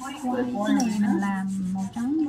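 A voice singing a slow melody, holding one long low note for about a second in the middle.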